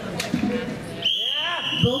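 Crowd chatter in a large hall, then a shrill, steady high-pitched whistle that starts suddenly about halfway through and holds on.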